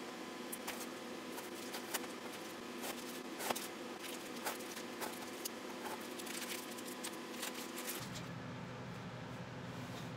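A masking stencil being peeled by hand off a spray-painted board, with irregular crackling and rustling as the mask comes away.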